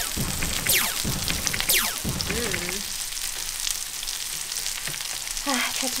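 Slices of pork belly (samgyeopsal) sizzling steadily on a tabletop grill pan. Background music plays for about the first two seconds, then stops.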